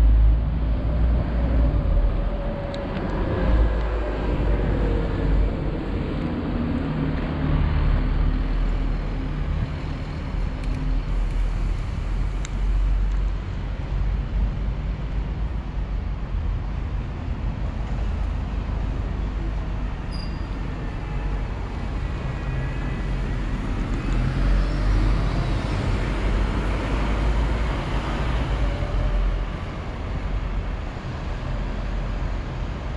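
City road traffic: motor vehicles passing on the street, a steady low rumble of engines and tyres, with engine notes rising and falling as a vehicle goes by a few seconds in and again near the end.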